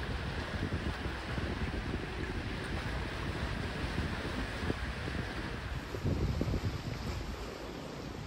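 Wind buffeting the microphone: an uneven low rumble over a steady outdoor hiss, gusting a little harder about six seconds in.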